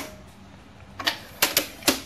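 Retractable telescoping handle of an iNMOTION V8 electric unicycle being released and pulled out: a sharp click as the release button is pressed, then, about a second later, a quick run of about four plastic-and-metal clicks as the handle sections slide out and lock.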